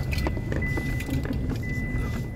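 Car interior road noise: a steady low rumble of engine and tyres as the car drives, with a few faint clicks and a thin steady high whine.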